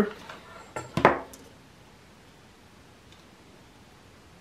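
A couple of sharp plastic knocks about a second in, as a hot glue gun is set down on a tabletop, followed by quiet room tone.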